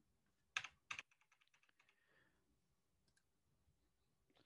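Computer keyboard and mouse clicks: two sharp clicks about half a second in, then a quick run of faint key taps, in near silence.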